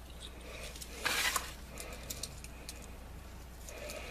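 Wooden kitchen matches rattling and clicking softly as they are handled and counted by hand, with a brief louder rustle about a second in.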